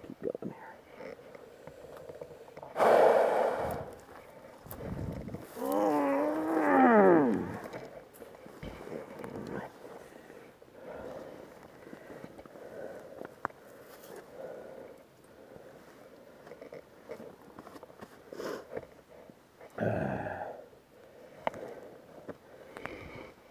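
A man breathing hard and grunting with strain while hauling a fallen dirt bike upright: a loud gasp about three seconds in, a long groan that falls in pitch a few seconds later, and another heavy breath near the end, with scuffing in between.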